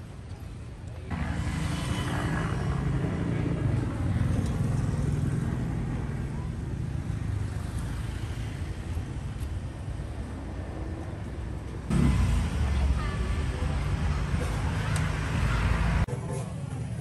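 Road traffic on a city street: car and motorbike engines passing, with voices in the background. The background changes abruptly about a second in and again at about twelve seconds.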